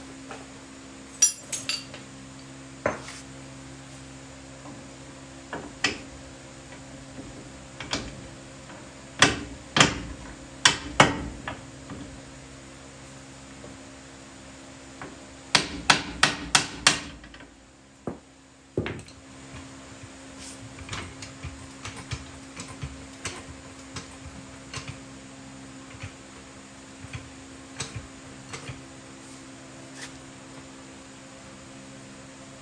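Hammer blows on the steel lower control arm and new ball joint of a Ford F-150 while the ball joint is being driven into the arm. The blows come singly, spaced a second or more apart, then in a quick run of about five near the middle, followed by lighter taps and ticks.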